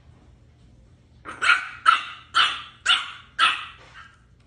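French bulldog puppy yapping: five quick, high-pitched play barks, about half a second apart, starting a little over a second in.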